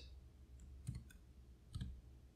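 Faint computer keyboard keystrokes: a few light taps, then a louder double click near the end.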